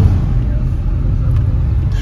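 Steady low rumble of a moving car heard from inside the cabin: engine and road noise while driving on the highway.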